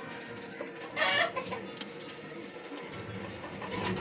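A short, loud animal call about a second in, over a steady background hum.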